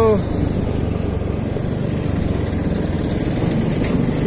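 TVS NTorq scooter running at low speed in town traffic, slowing down; its small engine and the road noise make an even rumble. A voice calling out ends just at the start.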